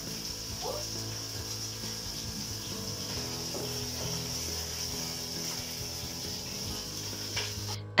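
Garlic-and-ginger-marinated chicken pieces browning in hot oil in a pot over very high heat: a steady sizzle that stops suddenly near the end.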